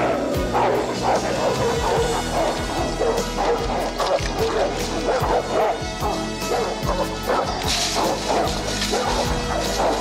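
Several dogs barking rapidly and repeatedly over background film music, with a crash about eight seconds in.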